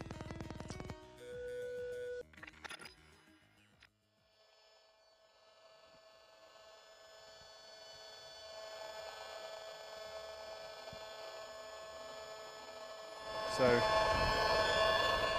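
Brief electronic pulsing and a short beep tone in the first couple of seconds. Then a buzz made of many steady tones fades in and grows louder: a mobile phone mast's microwave signal made audible through a radio-frequency detector, described as ugly and constant, never stopping.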